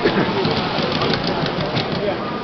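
Large-scale (G gauge) model train running past close by, its wheels clattering over the track in a run of light clicks.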